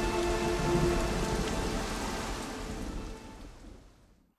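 Rain sound effect, a steady downpour, fading out over the last second or so.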